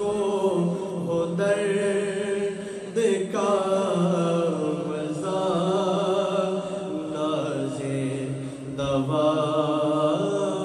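A male voice reciting a naat, an Urdu devotional poem, sung unaccompanied in long, ornamented held phrases with a wavering pitch. A steady low drone runs beneath. The phrases break briefly about a second in, at about three seconds, and near the end.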